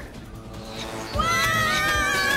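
Cartoon soundtrack music, joined about a second in by a long, high, wavering sliding sound that drifts slowly downward.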